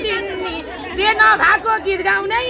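A woman's voice singing a line of Nepali dohori folk song without instruments, with other people chattering around her; the voices drop briefly in the first second.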